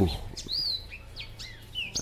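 Small birds chirping: a scatter of short, high downward-sweeping notes, with a rising-then-falling call about half a second in.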